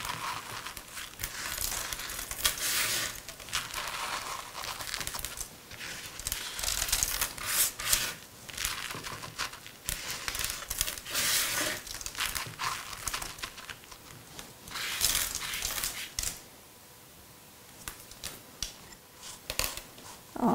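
Irregular rustling and crinkling in short bursts as hands press and pat candy sequins onto the sides of a fondant-covered cake; it goes quieter for the last few seconds.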